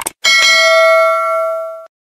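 A short click, then a notification-bell sound effect rings once: a bright ring that holds for about a second and a half and cuts off suddenly.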